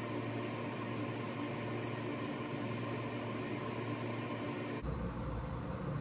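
Steady background hum with hiss, like a fan or appliance running in a small room. The lowest part of the hum changes about five seconds in.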